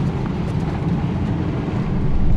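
Class C motorhome driving, its engine and road noise heard inside the cab as a steady low rumble.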